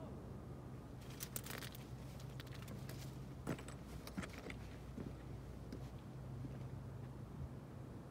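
Footsteps and small jangling clinks of a person climbing over rock, loudest in a cluster of sharp clicks in the first half, over a steady low hum.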